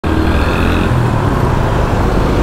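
Motorcycle riding on a city street: steady low engine rumble under a rushing haze of wind and road noise on the bike-mounted microphone.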